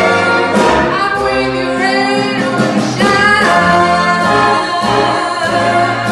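A woman singing with a jazz big band, her long held notes over the brass and saxophone section and piano.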